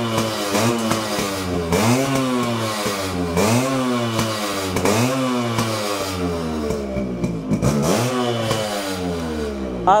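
Yamaha RX 100's two-stroke single-cylinder engine being revved in repeated throttle blips, about one every second and a half, each rising quickly and falling back toward idle.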